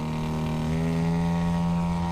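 Radio-controlled model airplane's engine running at steady throttle in flight: a single even, buzzing drone whose pitch barely changes.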